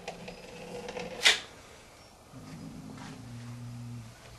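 Caulking gun being worked along a gap at the top of a window frame: a short, sharp click about a second in, followed by a low, steady hum in the second half.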